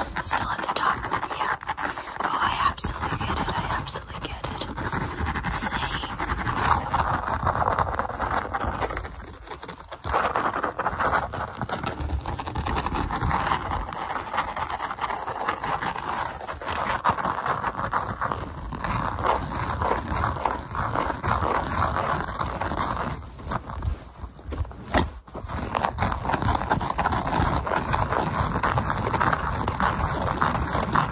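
Fast, close-up ASMR hand sounds: fingers rubbing and scratching right at the microphone, mixed with unintelligible whispered mouth sounds. They run almost without a break, easing off briefly about ten seconds in and again around twenty-five seconds.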